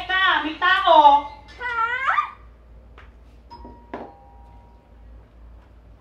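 A woman's wordless vocalizing, loud with big sliding rises and falls in pitch, for about the first two seconds. It is followed by a quieter stretch with a single sharp knock about four seconds in.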